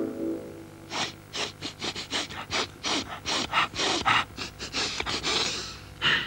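A cartoon dog character's rapid sniffing, voiced by an actor: a quick run of short sniffs, about four a second, starting about a second in and ending in a longer breath. He is sniffing out a scent.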